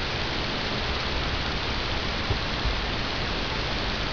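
Steady, even hiss of background noise, with a couple of faint low knocks around the middle.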